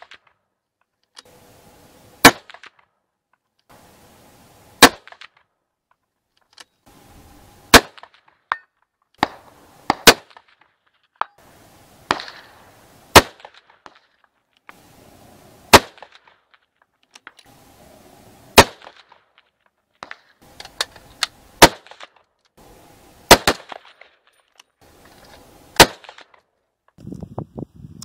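A series of about ten 6.5 Creedmoor rifle shots, one every two to three seconds, each a sharp crack with a short tail.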